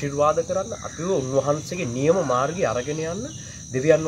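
A man talking in a level voice, with a steady high-pitched insect drone underneath.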